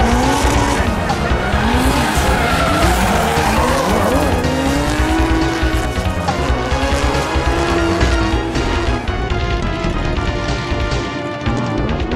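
Drift cars' engines revving up and down again and again as they slide, with tyre squeal, over background music.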